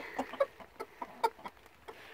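Rooster clucking in a series of short, separate clucks.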